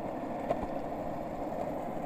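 Steady rumbling noise on a body-worn microphone while walking: wind and movement noise, with one faint click about half a second in.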